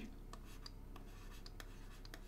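A stylus writing on a drawing tablet: a string of faint taps and short scratches as a number is written.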